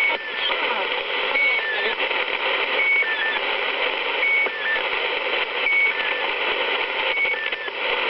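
Shortwave receiver in AM mode, tuned to 3830 kHz and playing the Russian 'Squeaky Wheel' two-tone station: a short high tone followed by two slightly lower, chirping tones, repeating about every second and a half over loud static hiss. It sounds like a never-ending alarm clock, and the signal is rumoured to be a marker that keeps the channel open for emergency military messages.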